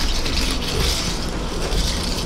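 A straw stirring crushed ice in a glass cocktail: a steady, dense rustle of ice crystals scraping and knocking against each other and the glass.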